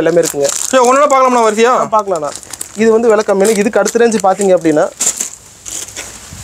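A man talking in two long phrases, then the crinkle of plastic-wrapped shirt bundles being handled near the end.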